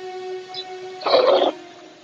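Milk squirting from a cow's teat into a metal bowl during hand milking, one longer burst about a second in, over background music with sustained notes.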